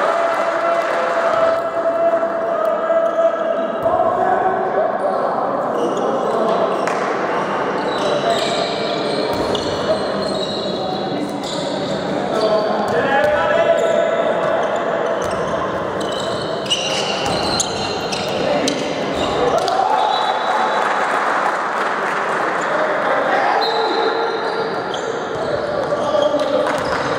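Indoor handball game: players calling out and a handball bouncing on the court, with knocks of play echoing in a large sports hall.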